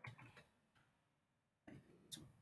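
Near silence with a few faint computer keyboard keystrokes as a word is typed: a short cluster of clicks near the start and another click near the end.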